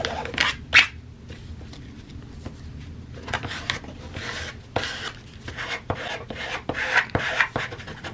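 A plastic card scraping across glued fabric in a series of uneven strokes, pressing out creases and smoothing the fabric flat onto the glue. The loudest stroke comes just under a second in.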